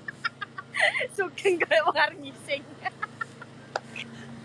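A person's voice making a run of quick, short, high-pitched sounds, loudest in the first two seconds.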